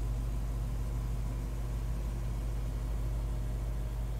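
The Lexus RC F's 5.0-litre V8 idling, a steady low hum with no change in pitch.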